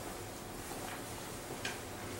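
Quiet room tone: a steady faint hiss, with one faint short click about one and a half seconds in.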